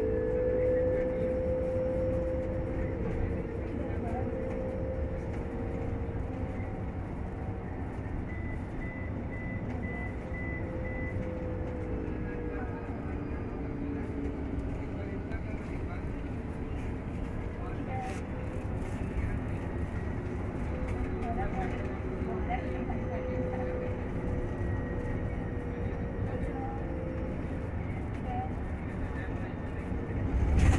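Inside an Olectra K7 electric bus on the move: steady road and tyre rumble, with the electric drive's whine slowly rising and falling in pitch as the bus speeds up and slows.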